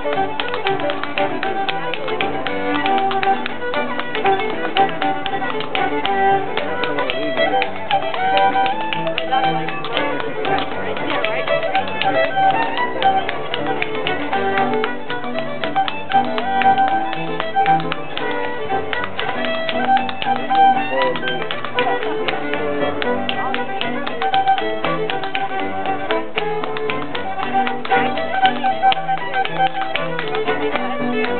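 An Irish dance tune played on fiddle and piano, with the quick, rhythmic taps of sean-nós percussive dance steps on the floor running through it.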